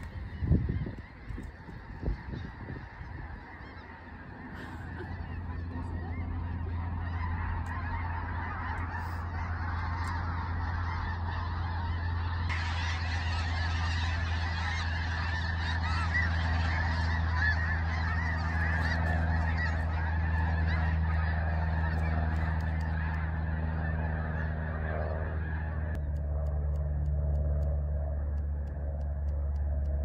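A large flock of birds calling overhead, many voices at once in a dense clamour that swells a few seconds in and is loudest in the middle. A steady low hum runs underneath, and a few sharp knocks sound right at the start.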